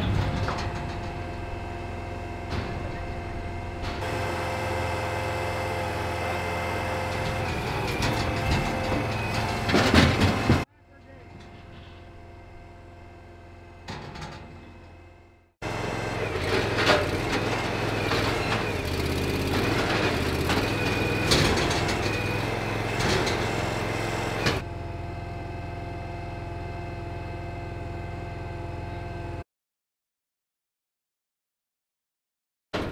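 Engine-driven hydraulic power unit of a steel squeeze chute running steadily, with loud clanks and bangs of the steel gates being worked.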